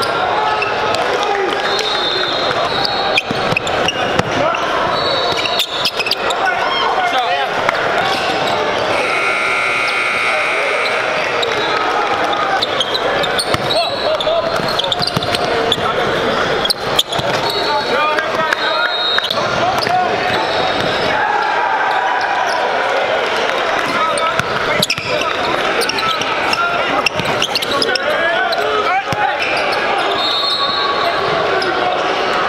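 Live game sound in a basketball gym: a basketball being dribbled and bouncing on the hardwood court, with sharp knocks throughout, under continuous indistinct crowd and player voices that echo in the large hall. A few short high-pitched squeaks come through now and then.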